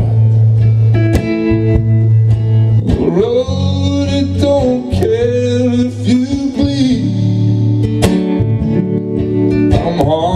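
Live solo acoustic guitar and a man singing: the guitar picked in a steady pattern over a held low bass note, with a sung line that glides in pitch from about three seconds in.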